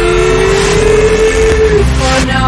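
Hip-hop music played backwards: a long held pitched note with overtones, over a steady bass, breaking off just before the end.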